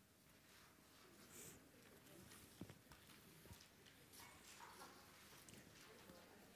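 Near silence: quiet room tone with faint scattered rustles and a few light taps.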